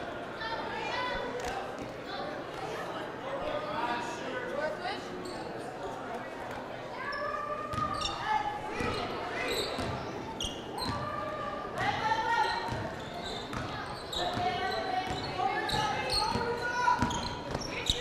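A basketball being dribbled on a hardwood gym floor, with scattered voices of players and spectators in a large gymnasium.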